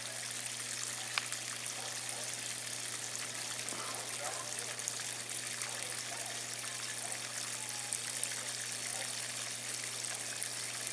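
Steady rush of flowing water, even and unbroken, with a low steady hum beneath it.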